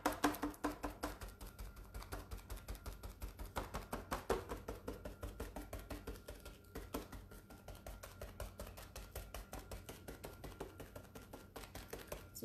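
Rapid, even tapping, about five taps a second, of paint being dabbed onto a glass pane to build up a mottled faux-patina finish.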